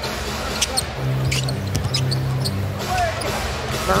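Basketball game sound on a hardwood court: the ball bouncing and short sharp sounds from the play over arena crowd noise. A steady low droning tone sounds from about one second in until about two and a half seconds.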